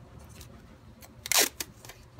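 Light handling clicks, then one short sharp snap about one and a half seconds in, from hand work on the control-box wiring.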